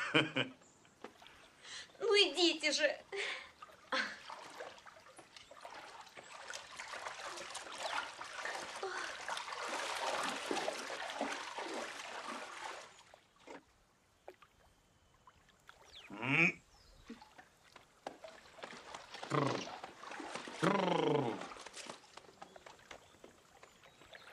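Water splashing and sloshing as a man wades through a shallow stream, lasting about ten seconds in the first half and stopping abruptly. Short bursts of voice come before and after it.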